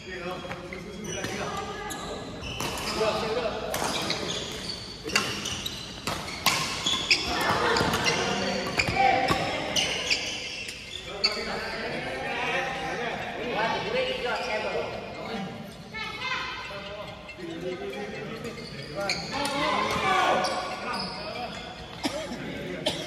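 Badminton rackets hitting a shuttlecock in rallies: sharp, irregular hits, several a second or so apart, echoing in a large sports hall.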